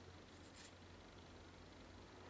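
Near silence: a low steady room hum, with a faint brief rustle about half a second in from paper card strips being pressed together between fingers.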